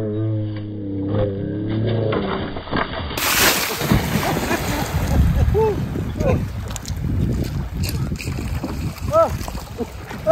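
A man's long held shout, then from about three seconds in the splashing and churning of lake water as he plunges in and thrashes about swimming, with short high cries coming through in the second half.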